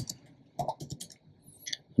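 A few quiet keystrokes on a computer keyboard as a short command is typed and entered, scattered as separate clicks about a second in and again near the end.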